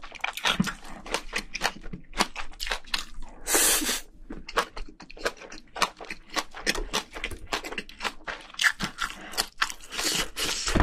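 Close-miked chewing and crunching of a mouthful of spicy braised seafood and bean sprouts: quick, wet mouth clicks in a rapid irregular run, with a brief loud rush of noise about three and a half seconds in.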